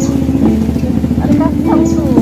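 A song playing: a voice singing a slow melody in long held notes that step up and down, over a steady low accompaniment.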